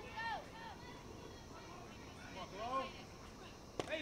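Faint voices calling out from players or fans, with a sharp single pop near the end as a softball pitch smacks into the catcher's mitt.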